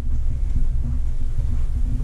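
A steady low rumble, with nothing higher or sudden over it.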